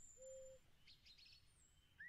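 Faint forest nature-sound background: a bird's single short, even, low hoot near the start, then a few brief high chirps about a second in.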